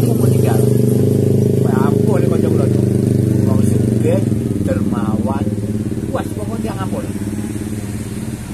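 A motorcycle engine running close by, a steady loud drone that eases off in the last couple of seconds, with snatches of talk over it.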